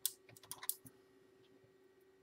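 Small hand tools being picked up and set down on an acrylic build deck, a quick run of clicks and rattles in the first second.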